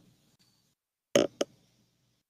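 A single short hesitant "um" from a person's voice a little past a second in, otherwise near silence.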